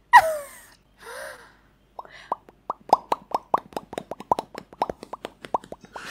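Mouth pops made with the lips in a fast run of about six a second, starting about two seconds in, each a short pitched pop.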